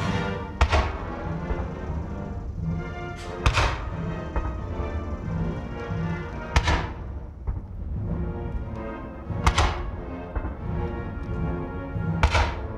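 A military band playing a national anthem, with four heavy booms about three seconds apart that ring out across the lawn: the shots of a ceremonial cannon salute fired during the anthems.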